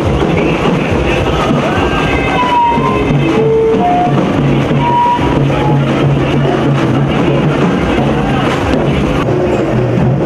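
Loud music played over a horn loudspeaker, with a steady low drone and a few short melodic notes near the middle.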